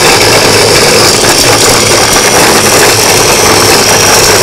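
Choppi electric mini chopper running steadily with its garlic-peeler attachment fitted, the motor held on while garlic cloves tumble in the plastic bowl to strip off their skins.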